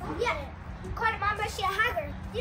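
A young girl's high-pitched voice in two short vocal phrases, a brief one at the start and a longer one in the second half, the words not made out.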